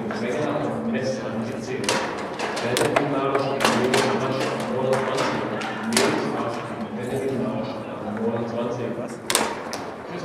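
Foosball table in play: about six sharp knocks of the ball and the players' rods at irregular intervals, the loudest about six seconds in and near the end, over steady background chatter of voices.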